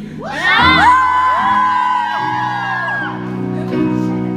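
A concert audience screaming and whooping, many high voices overlapping, dying down after about three seconds. Under the cheering, a keyboard begins holding sustained chords, changing chord about two seconds in, as the intro of a ballad starts.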